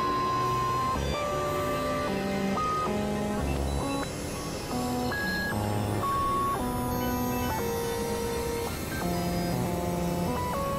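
Experimental electronic synthesizer music: several held tones that jump abruptly from pitch to pitch every second or so, over a dense, noisy low drone.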